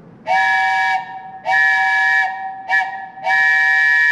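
A hand-held wooden train whistle blown in the railroad grade-crossing signal: two long blasts, a short one and another long, each a chord of several steady tones. The pattern signals that a train is approaching the crossing.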